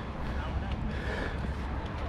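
Open-air ambience on a small camera's microphone: a steady low wind rumble, with faint distant voices of players on the field.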